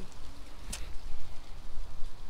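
Soft rustling and crackling as a hand rummages through plush toys in a cardboard box, over a steady low rumble, with one sharp click about a third of the way in.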